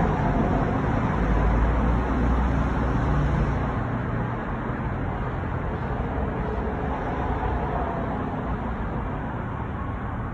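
City road traffic noise: a steady hiss with a low rumble that is strongest over the first few seconds and then eases off, as a vehicle goes by.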